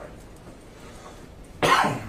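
A single loud cough near the end, short and sharp.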